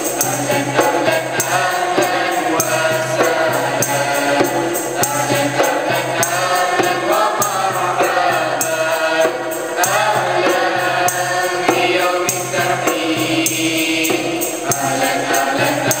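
Mixed choir of boys and girls singing a school song in unison, with a steady percussion beat underneath.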